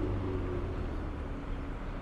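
Steady low rumble of city street traffic, cars driving by on the road.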